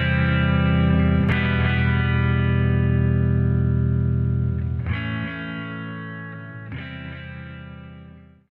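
Closing chords of a song on distorted electric guitar: each chord is held and left to ring, with new chords struck about a second in, near five seconds and near seven seconds. The sound fades steadily in the second half as the track ends.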